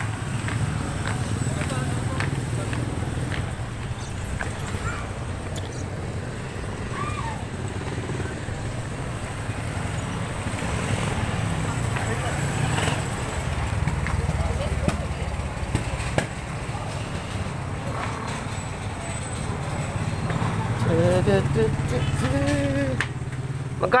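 Busy street and market background: a steady low rumble of traffic with motorcycles, and people talking around, with voices nearer near the end.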